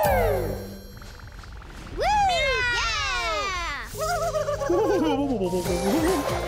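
Cartoon Sky Blub creatures calling with high, swooping cries over background music. One cry falls away at the start; about two seconds in, a louder cry rises and then falls.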